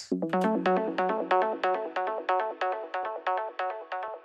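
Synthesizer audio clip playing back: a quick arpeggio of short plucked notes, about six a second, with a low note held under it for roughly the first two seconds.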